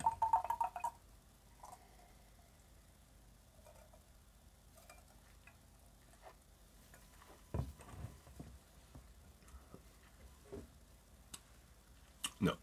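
A drawn-out "um" from a man's voice in the first second, then a quiet room with a few faint small clicks, the clearest a little past halfway.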